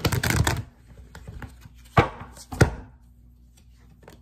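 Tarot cards being handled and laid on a wooden desk: a quick rustle of cards at the start, then two sharp taps of cards on the wood about two seconds in, a little over half a second apart.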